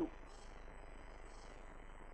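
Faint scratching of a pen writing on paper in a couple of short spells, over a low steady mains hum and hiss.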